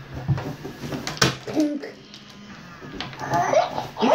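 Hatchimals electronic toy pecking at its plastic eggshell from inside, a few sharp taps, mixed with short electronic chirps and cries from the toy's speaker.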